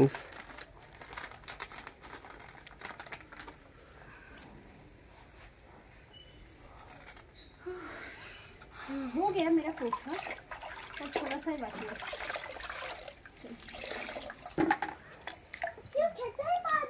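A wet floor cloth wiped by hand across a concrete floor: faint, scattered swishes and taps. About eight seconds in, indistinct talking takes over for several seconds, and there is a single sharp knock near the end.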